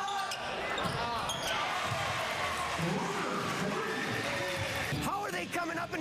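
Gym sound of a basketball game: a ball bouncing on the court and shouts, then the crowd noise swells into an even cheer about a second and a half in, lasting a few seconds.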